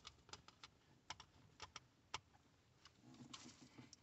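Faint, scattered clicks and taps of hard plastic as a Mazda 3 driver's door master window switch and its trim panel are handled, about a dozen small clicks spread over the few seconds.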